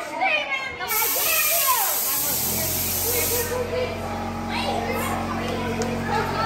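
A hissing jet of air, such as a haunted-house scare prop lets off, starting about a second in and lasting about two and a half seconds, over children's voices. A steady low hum sets in about two seconds in and keeps going.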